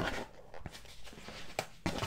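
A folded cardboard Priority Mail mailer sealed with painter's tape is handled and opened by hand. It makes quiet rustling and scraping, with two sharp snaps near the end.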